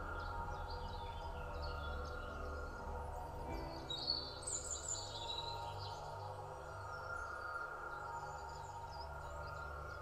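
Quiet ambient music of sustained, held tones with birdsong chirping over it; the chirps cluster near the start and again around four to five seconds in.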